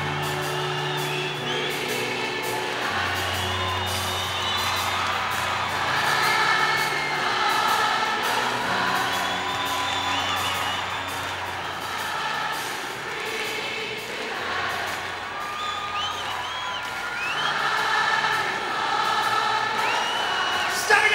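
Live rock concert in an arena: the band plays with long held bass notes while a singer sings and the crowd cheers, whoops and whistles.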